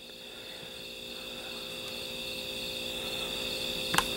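Quiet background of a steady high-pitched whine over a faint low hum, slowly growing louder, with a brief click at the very end.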